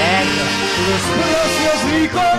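A man singing a held, wavering vibrato line into a microphone over band accompaniment, in a live television performance of a Dominican song.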